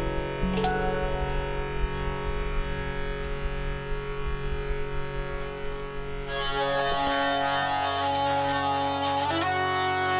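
Live instrumental music: handpan notes ringing over a low bass. From about six seconds in, a hurdy-gurdy takes over with a steady drone under its melody.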